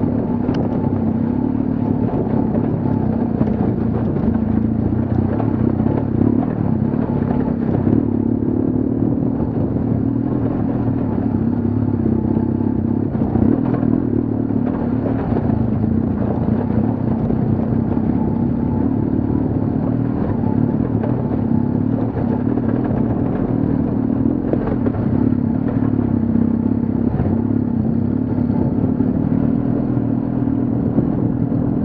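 BMW HP2 Enduro's 1170 cc boxer-twin engine running steadily under load as the bike rides over a rocky dirt track, with scattered clatter and knocks from the stones and the bike's suspension.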